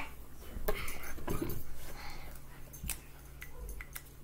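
A pet dog making a short vocal sound about a second in, with a few light clicks as a felt-tip marker is handled.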